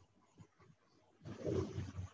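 A rough burst of noise lasting under a second, starting a little past halfway, picked up on a video-call participant's unmuted microphone, with faint crackle before it.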